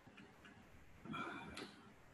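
Quiet room tone with a few faint clicks from a computer mouse as the lecture slide is advanced.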